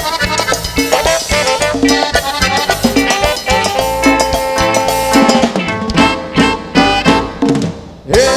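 Live Christian cumbia band music: drum kit and Latin percussion under sustained melodic notes. It dies away just before the end.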